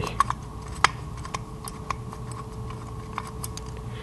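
Light, irregular clicks and taps of small metal parts being handled: the little screws and bulb holder on the back of a classic VW speedometer's metal housing being worked loose by hand, over a faint steady hum.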